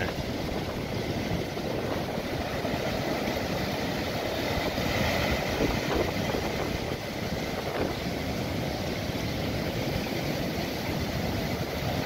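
Strong wind buffeting the microphone over the steady wash of breaking surf on a rough sea.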